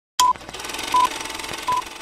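Three short electronic beeps on one high pitch, evenly spaced about three-quarters of a second apart, over a steady hiss; the first comes with a click as the sound starts.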